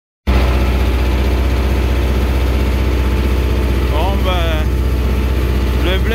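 Farm tractor engine running at a steady speed, heard from inside the cab as the tractor drives across a field: a loud, even low drone.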